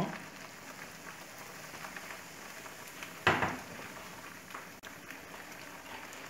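Pot of water at a rolling boil, a steady bubbling hiss. A single brief knock sounds about three seconds in.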